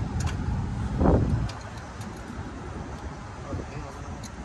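A low rumble with a brief louder swell, fading away about a second and a half in, followed by faint light metallic clicks of a licence plate and its fasteners being handled against a truck's plate bracket.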